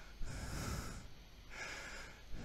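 A man breathing heavily in and out through the nose, twice, in soft noisy swells.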